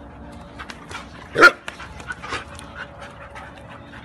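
A dog gives one short, loud bark about a second and a half in, followed by a few softer short sounds.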